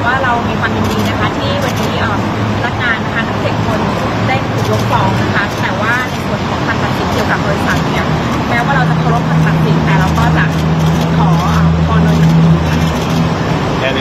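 A woman talking into press microphones over steady traffic noise, with a low engine hum that grows stronger about halfway through.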